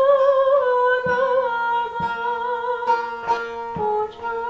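A woman singing a Turkish folk song in long held, wavering notes, accompanied by a bağlama (long-necked saz) plucked about once a second.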